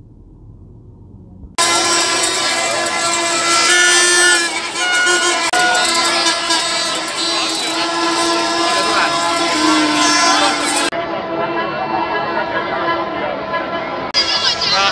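Crowd of football fans at a stadium entrance: many voices with a steady, held horn-like tone over them. The loud crowd sound cuts in suddenly about a second and a half in, after a faint muffled stretch.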